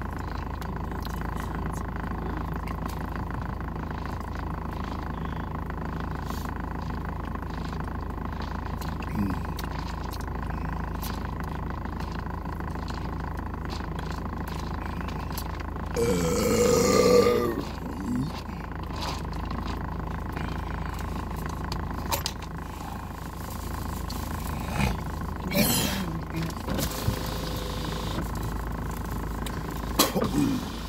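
Steady low hum of a car cabin, with a loud burp from a man drinking cola about halfway through and shorter throat sounds near the end.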